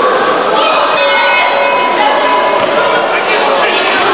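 A round bell struck once about a second in, ringing and fading over a couple of seconds, marking the start of the bout, over the chatter of spectators in a large hall.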